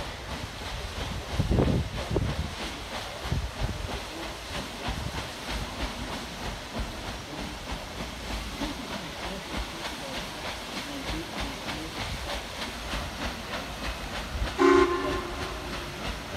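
Paddle steamer's paddle wheel and steam engine running with a steady rhythmic churn, with a brief low rumble about a second and a half in. Near the end comes one short blast of a steam whistle, the loudest sound.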